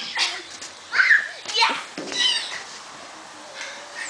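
Young children's voices: several short, high-pitched calls and squeals in the first half, then quieter.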